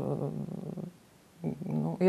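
A woman's voice: a drawn-out sound that trails off in the first second, a short pause, then her speech picks up again.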